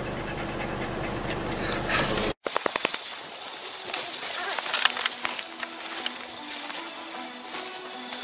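Vehicle driving slowly along a farm track, heard from inside the cab as a steady low rumble, cut off suddenly a little over two seconds in. After the cut comes quiet background music, with a light rustle of movement through grass.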